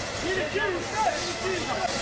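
Several voices talking and calling out, not close to the microphone, over a steady hissing noise from the fire scene.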